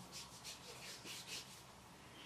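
A hand rubbing thick body lotion into the skin of a forearm: a few faint, soft strokes, thinning out in the second half.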